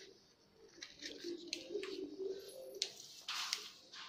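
Scissors snipping through newspaper, with paper rustling and a louder crunch of paper about three and a half seconds in. Beneath it, a pigeon cooing low for a second or two.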